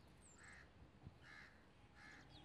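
Near silence with faint bird calls: three short calls about a second apart, with thin higher chirps between them.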